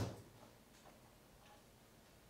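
A sharp click dying away at the very start, then a near-silent room with two faint ticks, about a second and a second and a half in.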